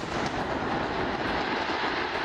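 Steady rushing rumble of a large outdoor explosion: the after-roar of a detonation of firecracker powder that was being made safe.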